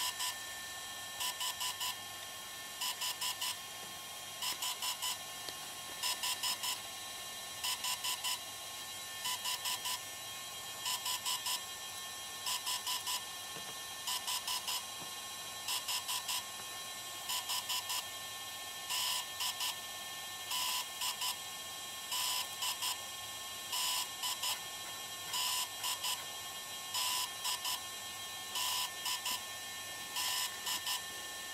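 DJI Phantom 3 quadcopter beeping while it installs a battery firmware update: quick clusters of two to four short, high beeps repeating about every one and a half seconds, over a faint steady whine.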